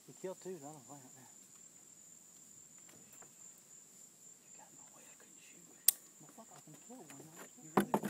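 A steady, high-pitched chorus of crickets, with one sharp click about six seconds in and a short cluster of knocks near the end.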